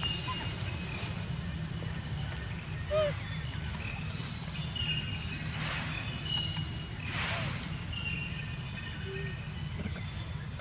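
Forest ambience: insects drone steadily over a low hum. One short, sharp animal call comes about three seconds in, and fainter rasping calls follow near six and seven seconds.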